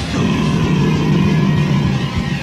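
Lo-fi raw black metal/noise recording from a 1990 cassette demo: a loud, dense wall of distorted noise over a steady low drone.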